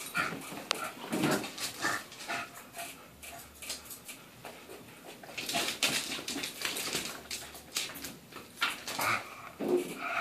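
An English bulldog and a Yorkshire terrier at play, making short high-pitched vocal sounds again and again, with a louder burst of scuffling about halfway through.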